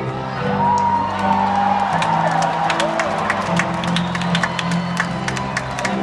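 Live piano playing slow, held chords through a stadium sound system, with the crowd cheering, whistling and clapping over it.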